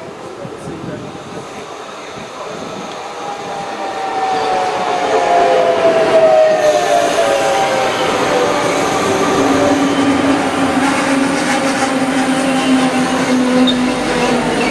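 Trenitalia Minuetto regional train pulling into the station and slowing alongside the platform. The sound swells over the first few seconds, with a whine that slowly falls in pitch, then settles into a steady lower hum as the train draws past.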